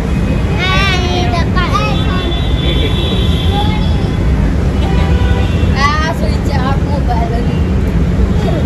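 Steady low rumble of outdoor street noise, with people's voices calling out over it about a second in and again about six seconds in.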